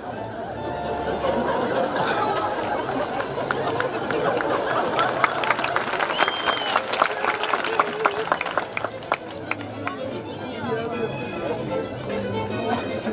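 A chamber orchestra playing, with audience chatter over it. Scattered sharp clicks come through from about two to nine seconds in.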